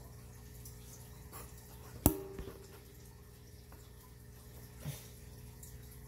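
A single sharp click with a brief ring about two seconds in, a fainter tick near the end, over a steady low hum.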